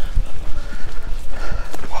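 Footsteps on a gravel path strewn with dry leaves during brisk walking, with an uneven low rumble on the microphone of a camera carried by a walker. A short exclamation of 'wow' comes at the very end.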